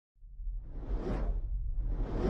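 Intro whoosh sound effect: a rushing sweep over a deep rumble that swells to a peak about a second in, with a second whoosh building near the end.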